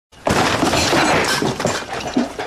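Glass smashing: a sudden crash about a quarter second in, followed by about a second and a half of loud breaking glass.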